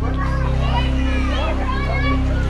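Background music with a heavy, steady bass, with voices over it.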